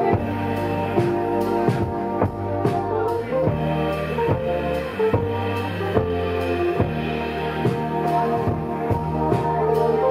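A band playing live: a drum kit keeps a steady beat, about two hits a second, under electric guitar, electric bass and keyboard.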